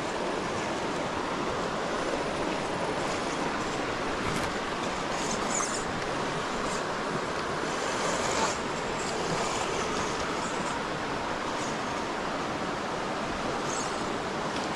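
Steady rush of a shallow river flowing over rocks.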